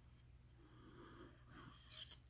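Near silence: quiet room tone with faint breath sounds.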